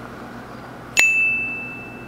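A single bell-like ding sound effect, struck sharply about a second in and ringing on as one steady high tone. It marks a jump-cut transition in the edit.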